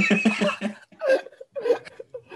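Several people laughing, with a quick run of laughing pulses at the start that breaks into a few shorter bursts.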